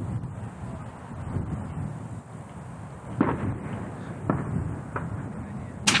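Sharp rifle reports over a low rumble: one about three seconds in, another a second later, a fainter one after that, and the loudest just at the end.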